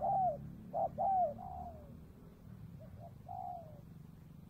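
Spotted doves cooing: repeated phrases of a short note followed by a longer, falling coo. The loudest phrases come in the first second and a half, and a fainter phrase follows about three seconds in.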